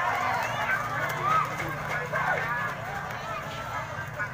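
Crowd of spectators shouting and calling out, many voices overlapping and slowly dying down, over a steady low hum.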